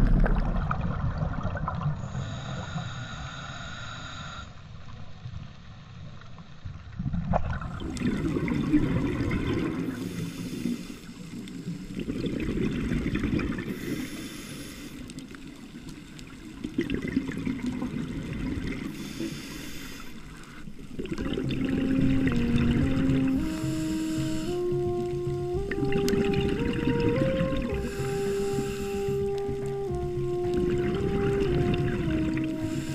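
Muffled underwater noise from a scuba dive: a rush of water and bubbles at the start that fades, then short bursts of exhaled bubbles from a diver's regulator every four to five seconds. A slow melody of music comes in about two-thirds of the way through and carries on to the end.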